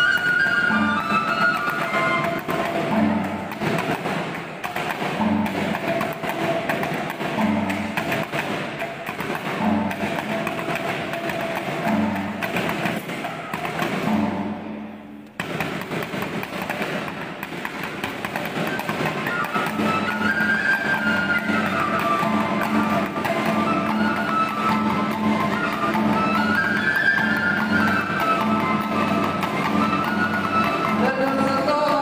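Live traditional Kluet dance music: a drum beats a slow, steady pulse under a wavering melody, with gong and percussion accompaniment. The music dips briefly about halfway through.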